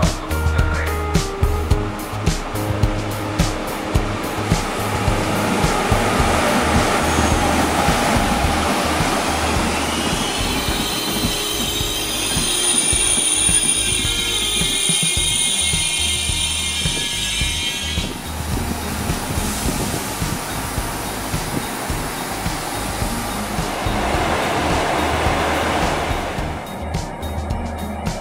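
Trenitalia Intercity train hauled by an E402A electric locomotive rolling into the station and slowing for its stop. A high-pitched brake squeal rings from about ten seconds in until about eighteen. Background music plays over it.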